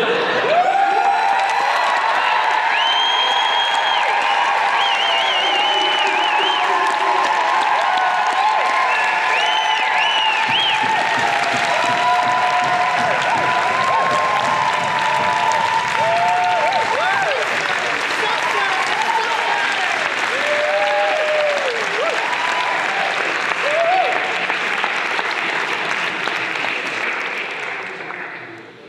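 A theatre audience applauding loudly with cheers, bursting out suddenly at the end of the act and dying away near the end.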